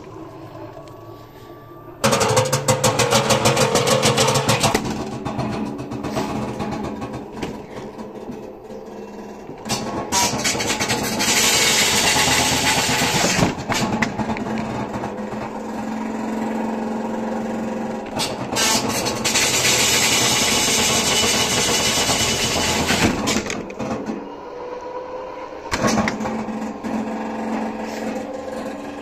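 LG WD-10600SDS direct-drive front-loading washer running in service mode: its door clicks shut, then about two seconds in the drum and motor start loudly with a rapid rattle. After that comes a long spell of whirring and hissing that swells and eases twice, with a faint rising whine near the end.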